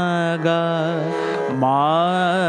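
A male voice singing sargam in Hindustani classical style, in Raag Bageshri. He holds the note ma, moves to ga about half a second in with small ornamental wavers, then begins a new phrase near the end.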